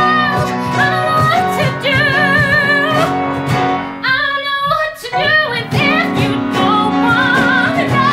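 A musical-theatre song: a female voice singing the melody with vibrato on held notes over instrumental accompaniment. About four seconds in, the accompaniment thins to short stopped chords and the sound dips briefly, then the full backing returns.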